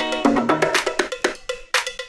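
A funky, percussion-driven dance track played from vinyl through the DJ mixer. Struck percussion hits about four times a second over pitched instrument notes.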